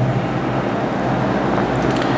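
Steady background noise with a low hum, no speech.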